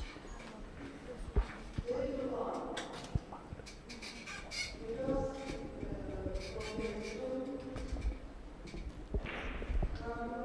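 Indistinct voices in a large hall, faint and in the background, with a few sharp clicks now and then.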